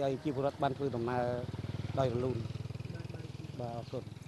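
A motorcycle engine running with a steady low hum under a man's speech.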